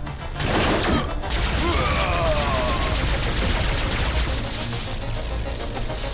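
Cartoon action sound effects over background music: a sudden noisy burst with a rising whoosh about half a second in, a few falling electronic tones, then a continuous dense noise with a low rumble.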